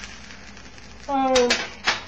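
Quiet sizzle of a grilled cheese sandwich frying in a small nonstick pan. Near the end come a few sharp clicks as a metal table knife is set down on the enamel stovetop, the last click the loudest.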